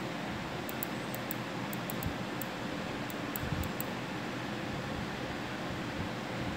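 Steady hiss of room noise, like a fan, with faint, sharp high ticks, often in pairs, through the first four seconds.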